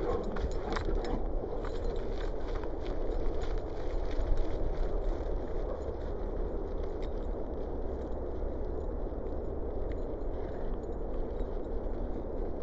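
Steady low outdoor rumble, with a flurry of faint clicks and knocks in the first couple of seconds.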